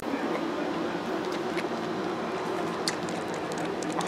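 A kitten sucking on a man's earlobe: faint, irregular wet smacking clicks over a steady background hiss.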